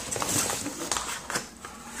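Cardboard box being pulled out of foam packing: rustling and scraping of cardboard against foam, with a few light knocks.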